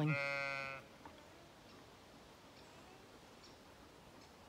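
A sheep bleating once: a single loud, steady call of under a second at the very start, then only faint background.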